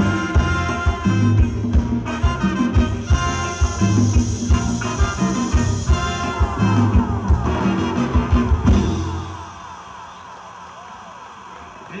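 A live band with drums, congas and brass playing an upbeat tune over a heavy bass beat; the music ends about nine seconds in, leaving a much quieter background.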